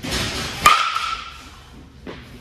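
A two-piece composite baseball bat hitting a pitched ball: a rush of noise, then a sharp crack with a brief ringing ping a little over half a second in. The ball is struck hard, at about 101 mph exit velocity.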